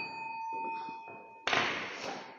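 Small metal singing bowl ringing after a strike with a wooden striker: one steady tone with a few fainter, higher overtones, slowly fading. About one and a half seconds in, a dull knock sounds over the ringing, which carries on.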